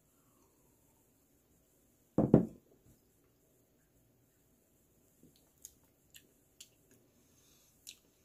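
A man drinking a pilsner from a glass and tasting it. About two seconds in there is one short, loud mouth sound after the sip, and from about five seconds on a few faint lip smacks as he tastes.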